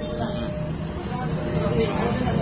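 Indistinct voices over a steady low rumble of outdoor background noise.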